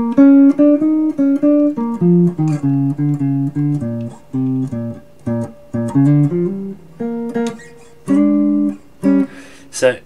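Solid-body electric guitar (Les Paul-style, two humbuckers) playing a single-note jazz blues line in B-flat, with chromatic moves from the minor third to the major third, in short phrases with brief pauses between them.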